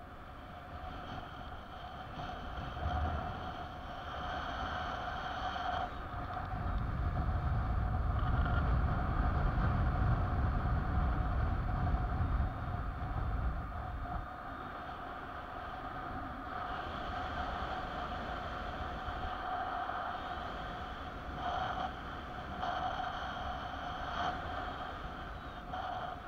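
Wind rushing over the camera microphone during a mini-wing paraglider flight, gusting louder with a low buffeting rumble from about 6 to 14 seconds in. A thin steady tone runs through it all.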